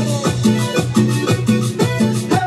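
Live band playing Latin-style dance music with a steady beat, instruments only.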